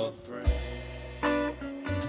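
Steel-string acoustic guitar strummed in chords: two strokes, about half a second and just over a second in, each left to ring over a deep bass note.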